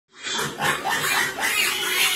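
A group of piglets squealing and grunting without pause as they crowd together to eat feed scattered on a concrete floor.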